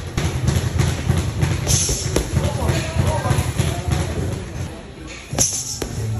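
Gloved punches landing on a hanging heavy bag: a few sharp thuds, the clearest about two seconds in and a quick pair near the end. Music with a deep bass line and vocals plays underneath throughout.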